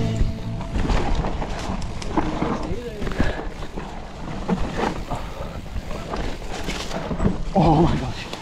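Mountain bike riding down a rough dirt trail: tyres rolling over dirt and dry leaves, with repeated knocks and rattles of the bike over bumps and wind rushing on the mic. A short vocal shout comes just before the end.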